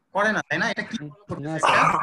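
A man speaking in a lecture, talking continuously.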